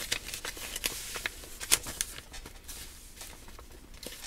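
Paper rustling and crinkling with short scuffs and clicks as a stiff mailed envelope is handled and its contents are worked out, which is hard to do; it gets quieter toward the end.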